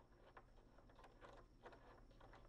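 Near silence with a few faint small clicks, from a Phillips screwdriver working the screw that holds in the charger's fuse.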